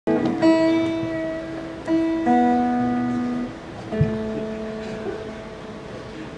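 Acoustic guitar played alone, four chords or notes struck about a second or two apart, each ringing on and slowly fading.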